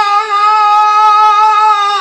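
A male Quran reciter holding one long note in melodic (mujawwad) recitation, the pitch steady.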